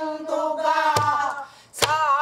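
A woman's pansori voice holds a long sung note that sinks slightly in pitch and fades out about a second and a half in. She accompanies herself on a buk barrel drum, with one low drum stroke about a second in and a sharp stick stroke near the end.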